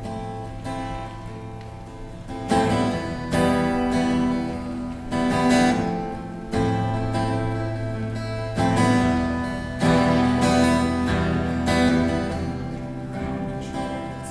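Two acoustic guitars strumming chords, soft at first and louder from about two and a half seconds in, with a regular rhythm of strokes.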